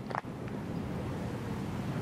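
Steady outdoor background noise on a golf course: a low, even hiss with a single brief click just after the start.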